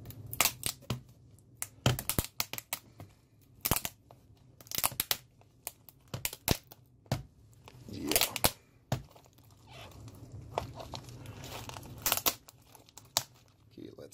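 Glued-in laptop keyboard being peeled up from its metal tray by hand. The adhesive tears with many sharp, irregular cracks and pops.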